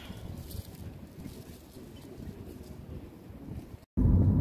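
Wind buffeting a phone microphone outdoors: an uneven low rumble that cuts out briefly near the end.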